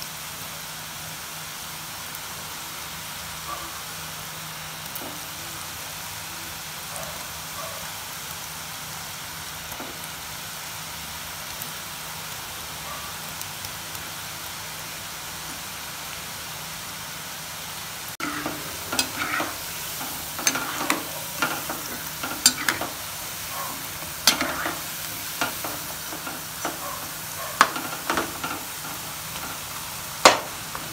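Besan-coated peanut pakoda frying in hot oil in a non-stick wok, a steady sizzle. About two-thirds of the way through it gets louder, and a metal slotted spoon stirs the pieces with sharp clicks and scrapes against the pan.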